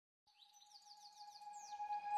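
Start of an intro jingle fading in: a quick run of falling, bird-like chirps over a steady held tone, growing louder.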